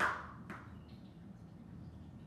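A plastic toy ring hits a carpeted floor and bounces, making two knocks about half a second apart, the first the louder.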